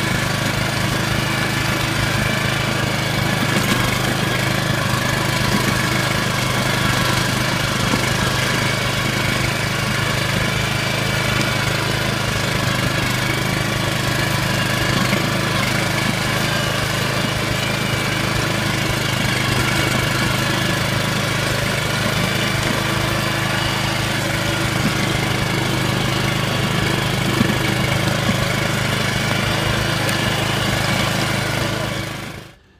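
Walk-behind Agria motor hoe's small petrol engine running steadily as its tines work through sodden, muddy soil.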